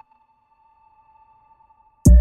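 Near silence during a break in a hip hop beat, with only a faint steady high tone lingering.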